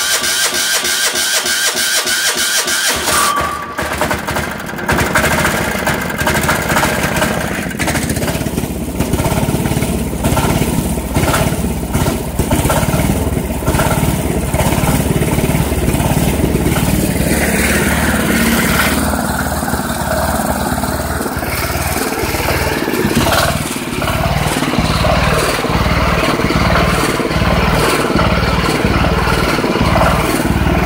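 Cold start of a Craftsman GT6000's single-cylinder diesel engine. The starter cranks it for about three seconds, then the engine catches and runs unevenly at first before settling into a steadier idle near the end.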